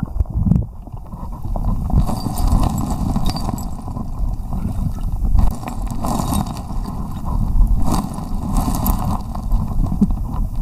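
Muffled churning and rushing of water picked up by a camera held under water in a shallow creek, with a low rumble and scattered clicks and knocks of stones and gravel.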